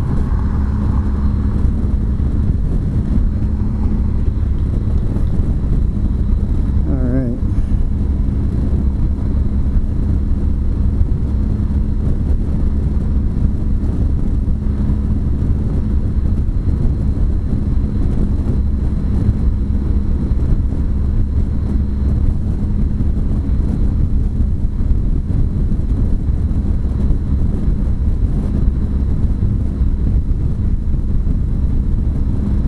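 Wind and road noise from a Honda CTX1300 motorcycle cruising at highway speed, with a steady hum from its V4 engine underneath. A brief wavering tone cuts through about seven seconds in.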